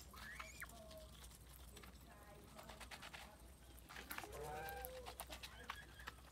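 Domestic geese and goslings calling softly as they feed: a short rising peep near the start and a lower call about four seconds in, over many sharp clicks of bills pecking feed from the bowls.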